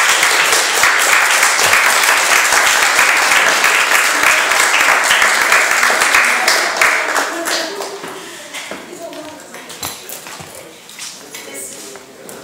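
Audience applauding, loud and dense for about seven seconds, then thinning to scattered claps that die away near the end.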